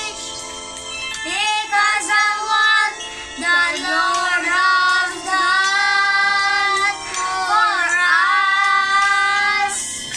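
Two young boys singing together, holding long notes in phrases broken by short pauses for breath.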